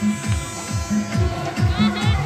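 Amplified music and a voice playing over horn loudspeakers, with a steady electrical buzz running under them.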